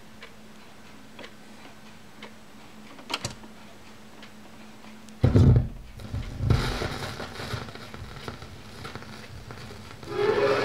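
Record player with a faint hum and a soft tick about once a second. About five seconds in the stylus drops onto a spinning 7-inch vinyl single with a loud thump, followed by surface crackle and clicks from the lead-in groove before the music begins.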